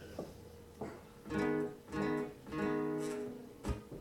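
Acoustic guitar with a few chords strummed, the last one held and left ringing for most of a second, ahead of a song.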